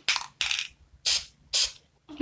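Aerosol spray-paint can hissing in four short bursts.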